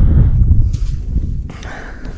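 Wind buffeting the camera's microphone as a heavy, uneven rumble, with rustling and a couple of short crunches from moving over dry grass.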